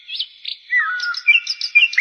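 Bird chirping: a few short whistled notes and one falling whistle, then a quick, regular run of sharp repeated chirps near the end.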